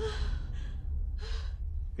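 Two gasping breaths, one at the start and one a little over a second later, over a steady low rumble.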